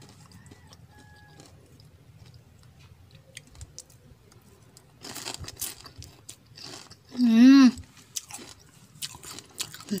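Crisp crunching and chewing of crispy fried anchovies (dilis) dipped in vinegar. It starts about five seconds in and comes in two spells, with a short "mmm" between them.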